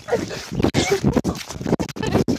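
Breathless laughing and panting close to the microphone, mixed with rustling and knocks from a phone being jostled against the body.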